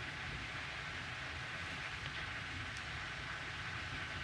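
Steady background hiss of a catheterisation lab's room and equipment noise, with a faint thin steady tone and no distinct events.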